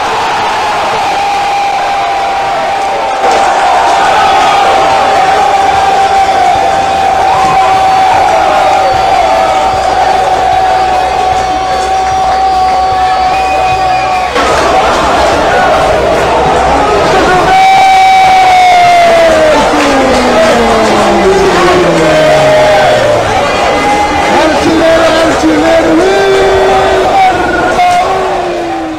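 Football crowd cheering and shouting after a goal. A long held note runs through about the first half, and a sweep of pitch falls slowly later on.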